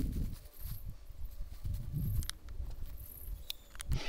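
Footsteps on straw mulch as a person walks along a garden row, with an irregular low rumble and a few light clicks near the end.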